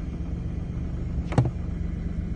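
Car running, a steady low rumble heard from inside the cabin. A sharp double click cuts in about one and a half seconds in.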